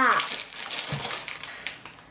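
Clear plastic packaging crinkling as a small wrapped item is handled and pulled at, fading out toward the end.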